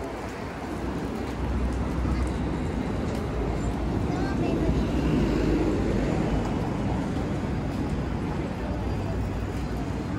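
Busy city street ambience: steady road traffic rumbling past, with indistinct voices of passing pedestrians.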